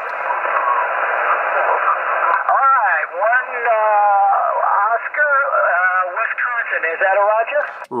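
Ham radio transceiver's speaker hissing with band noise for about two and a half seconds, then another station's voice coming through it. The voice is thin and narrow-band over the hiss, as the distant operator replies with their exchange.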